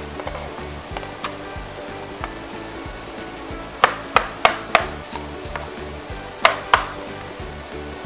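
A knife blade tapping and scraping against a plastic cutting board as diced mango is pushed off it into a plastic chopper bowl. It makes sharp clicks, four in quick succession near the middle and two more a little later, over soft background music.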